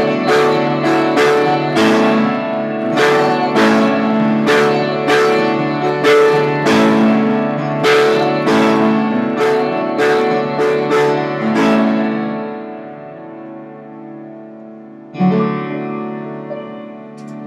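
Upright piano played in a steady rhythm of repeated chords, about two a second; after about twelve seconds the playing stops and the chords ring away, and one last chord is struck near the end and left ringing.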